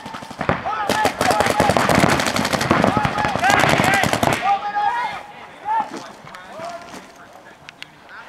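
Paintball markers firing in a fast stream of shots, many a second, from about half a second in until they stop at about four and a half seconds.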